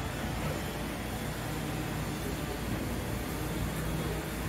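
Steady rumble and hiss of a cruise ship under way, with a faint low hum through the middle.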